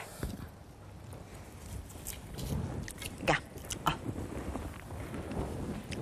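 Quiet rustling of handling, with a few light clicks and knocks, as a bow is picked up and handled.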